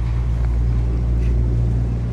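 A machine running with a steady, unchanging low hum.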